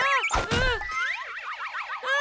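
Cartoon slapstick sound effects over music: a dull thud about half a second in, for a fall, then wobbling boing-like tones that rise and fall in pitch.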